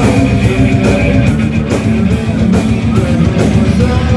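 Heavy metal band playing live: distorted electric guitar riffing over drums that keep a steady beat, a little over two hits a second, in an instrumental passage with no clear singing.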